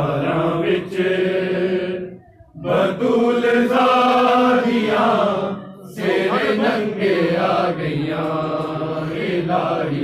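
Male voices chanting a Punjabi noha, a Shia mourning lament, in long held phrases, with two short breaks about two and six seconds in.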